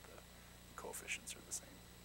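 Faint, off-microphone speech from an audience member asking a question, a few quiet syllables with sharp hissing consonants about a second in. A steady low hum runs underneath.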